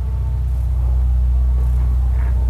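A steady low hum, with no other sound standing out.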